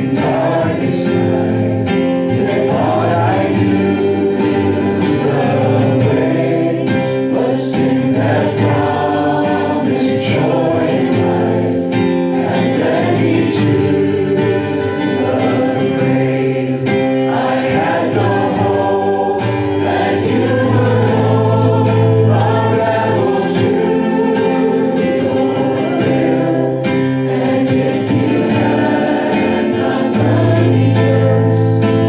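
A church congregation singing a hymn together, accompanied by strummed acoustic guitar.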